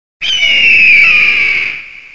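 Sound effect for an animated radio-station logo: a loud, high tone with overtones that starts suddenly, slides slightly down in pitch and fades out after about a second and a half.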